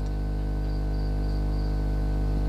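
Steady low electrical hum with many evenly spaced overtones, with a faint high-pitched chirping in short pulses through the middle.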